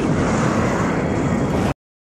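Explosion sound effect: a loud, rumbling blast that holds steady and then cuts off abruptly near the end.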